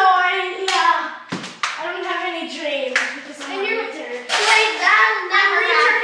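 Children's high voices yelling and wailing without words, with several sharp clacks as floor-hockey sticks strike the ball and floor.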